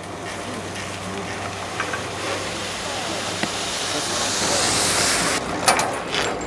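An old chairlift running at its bull-wheel station: a steady hiss that swells over a few seconds and breaks off about five seconds in, followed by a few sharp clacks.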